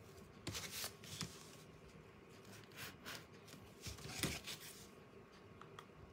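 Faint crinkling and rustling of thin decoupage tissue and plastic wrap handled by fingers, in a few short bursts: the loudest about half a second in and again about four seconds in.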